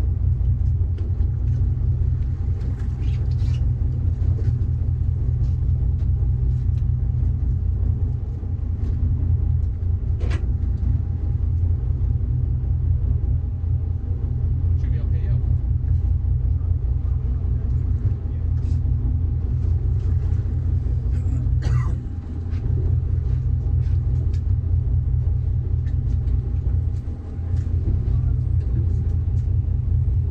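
A fishing boat's engine running steadily, a low rumble under the deck, with faint voices and short clicks or knocks now and then.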